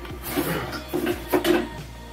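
Small objects being picked up and handled on a desk: a few short knocks and rustles, the sharpest about a second and a half in.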